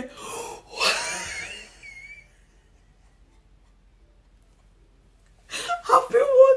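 A woman's excited, breathy gasps in the first two seconds, the loudest about a second in, ending in a short high squeal; her voice starts again just before the end.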